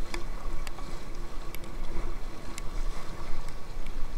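Fast river water rushing and splashing around an inflatable kayak running a rapid, with a steady low rumble and a handful of sharp clicks scattered through it.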